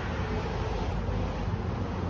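Wind buffeting the microphone outdoors: a steady hiss with a heavy low rumble.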